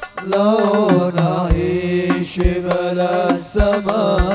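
Sholawat devotional song performed live by a hadroh group: singing with a wavering, ornamented melody over held lower notes, and deep frame-drum strokes about once a second.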